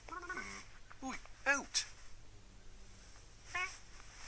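A cartoon cat's meows voiced by a person: a few short mews, each rising and falling in pitch, with a sharp click between the second and third.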